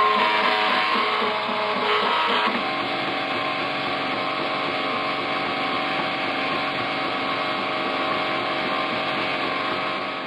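Homebrew three-axis CNC mill engraving a copper-clad circuit board with an engraving bit: a steady motor whine with several held tones from the spindle and axis drives. The tones shift about two and a half seconds in as the machine changes its travel.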